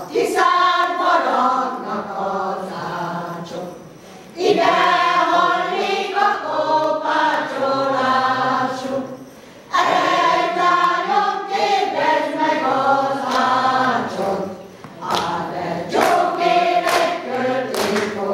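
Women's folk choir singing unaccompanied, in phrases broken by short pauses for breath about every five seconds.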